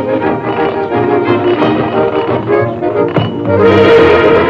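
Orchestral cartoon score music with strings, with a single knock-like hit about three seconds in.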